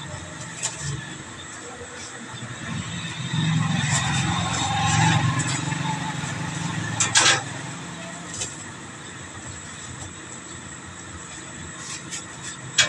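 A motor vehicle going past, its low engine rumble swelling and fading over about five seconds in the middle, with a sharp metal clack about seven seconds in.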